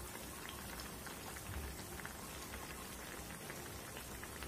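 Curry simmering in a steel pot, a faint steady bubbling with small scattered pops.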